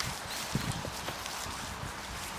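A few soft, dull thuds of footsteps on straw-covered ground, about half a second to a second in, with light rustling over a steady outdoor hiss.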